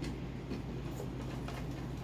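A few light clicks and ticks of a hard plastic blender cup and its screw-on lid being handled and turned over, over a low steady hum.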